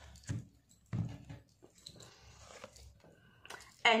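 Oracle cards being handled on a table: two short, soft knocks close together, then a brief papery rustle as a card is drawn from the deck and laid down.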